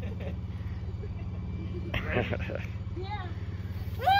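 An engine idling steadily, a low even hum, with faint voices about halfway through.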